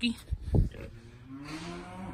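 A cow mooing: one long low call starting about a second in.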